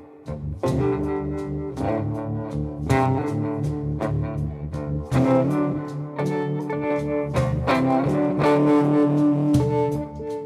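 Electric guitar played live through an amplifier, a gold-top solid-body with soapbar pickups, picking chords and single notes that ring and decay one after another. There is a brief drop in sound at the very start before the playing comes back in.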